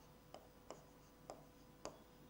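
A pen tapping and scratching on the glass of an interactive touchscreen board while words are handwritten: four faint, sharp ticks spread over two seconds.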